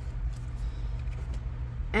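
A steady low hum runs throughout, with a few faint light clicks of a cardstock gift tag being handled.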